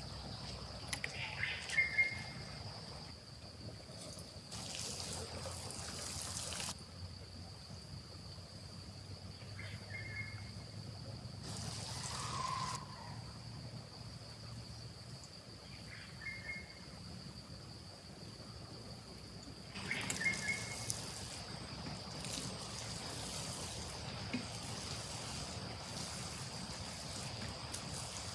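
Water poured from a small plastic scoop onto garden soil and seedlings in three short spells, over a steady high insect drone, with a few brief high chirps.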